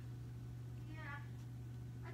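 A faint, brief high-pitched voice about a second in, over a steady low electrical hum.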